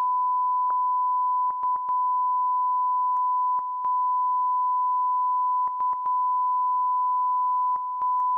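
Steady 1 kHz line-up test tone sent with colour bars over a broadcast feed that carries no programme. It drops out briefly with small clicks several times, in short clusters about two seconds apart.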